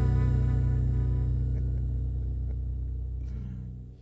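A band's final chord ringing out on guitars and bass, sustained and slowly fading, dying away to near silence near the end.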